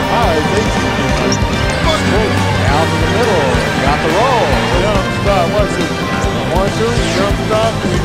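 Music plays over live game sound, with a basketball being dribbled on the hardwood court in a series of evenly spaced knocks.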